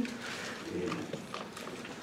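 Light rustling and a few soft clicks of Bible pages being turned to find the passage.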